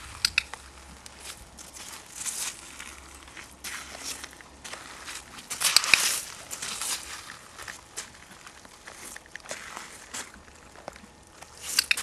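A horse's hooves stepping and scuffing on gravel, making irregular crunching. There is a louder cluster about six seconds in, and a few sharp clicks near the start and near the end.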